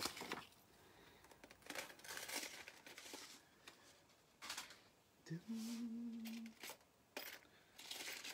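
Packaging crinkling and rustling in short bursts as it is handled. A short hummed note, about a second long, comes a little after the middle.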